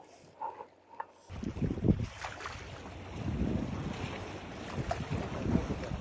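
Wind buffeting the microphone, an uneven low rumble with a rushing hiss that starts abruptly about a second in after a quiet start.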